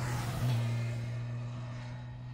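A motorcycle passes close by and rides away, its engine note fading steadily after a louder moment about half a second in.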